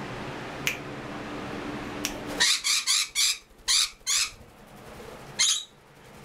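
Quaker parrot giving a rapid series of loud, harsh squawks, about six in two seconds, then one more near the end.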